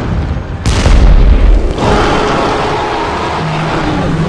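Cartoon sound effects: a heavy, deep boom about a second in, then a long rough rumble that carries on to the end.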